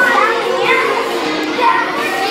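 Many children's voices chattering at once, echoing in a large hall, with music playing behind them.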